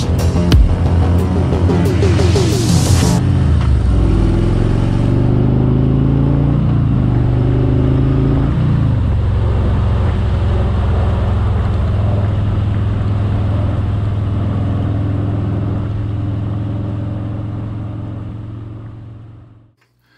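Harley-Davidson Road King Special's V-twin engine on the move, mixed with music in the first few seconds. Its pitch rises and falls as it accelerates and shifts, then it settles into a steady cruise and fades out near the end.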